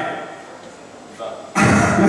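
A sudden strum on an acoustic guitar about one and a half seconds in, after a short lull.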